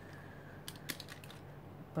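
A few faint, light clicks and taps of hands pressing a stamp onto a paper journal page and lifting it off.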